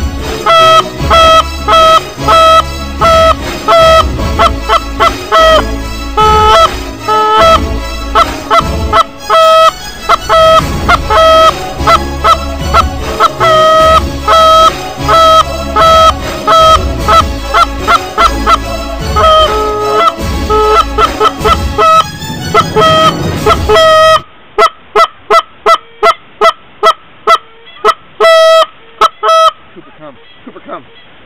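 A flock of Canada geese honking, many calls overlapping in a dense, continuous chorus over a low rumble. About three-quarters of the way through, the sound changes suddenly to sparser, thinner-sounding single honks.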